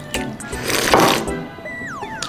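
A person slurping ramen noodles and broth from a bowl: one wet sucking slurp about a second long, near the middle, over background music.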